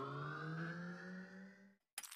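Outro sound effect: a quiet synthetic hum that slowly rises in pitch, fades, and stops just before the end.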